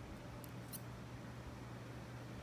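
Quiet room with a steady low hum, and two faint, very short high-pitched ticks close together a little before the middle.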